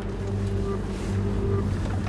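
Car engine and road noise heard from inside a moving car's cabin: a steady low drone.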